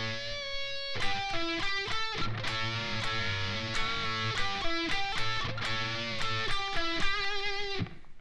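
Sterling electric guitar playing a short blues-style lead from the E minor blues scale: double-stop bends at the 14th fret on the G and B strings, then single notes at the 12th and 14th frets on the D and G strings. The notes follow one another quickly, with a few held notes that waver in pitch.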